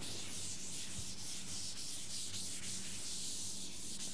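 Pen scratching on paper in a run of quick writing strokes, with a faint steady hum beneath.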